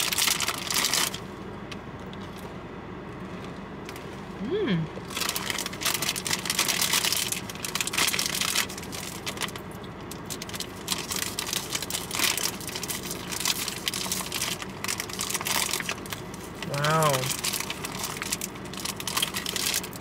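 Cookie packaging crinkling and rustling in irregular bursts as it is handled and opened, with a short hummed "mm" near the end.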